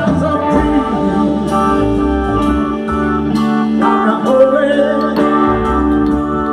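Soul band playing live: electric guitars, bass and drums with a singer's voice over them.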